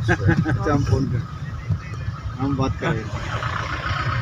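Steady low rumble of a car's engine and road noise inside the cabin, with voices over it in the first second and again about two and a half seconds in.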